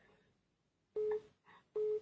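Telephone busy tone from a phone's speaker: two short, steady beeps about three-quarters of a second apart, the sign that the call's line has been cut off.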